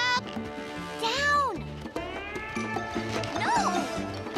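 Cartoon background music with three short wordless cries from animated characters over it: a quick rising yelp at the start, a longer arching cry about a second in, and a brief rising-and-falling cry near the end.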